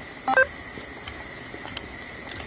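A short electronic beep of a few stepped tones about a third of a second in, over a faint steady high-pitched tone and low background noise.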